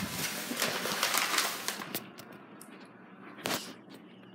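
Close rustling and rubbing right against the microphone, full of crackly clicks for about two seconds, then quieter scattered clicks and one sharp knock near the end.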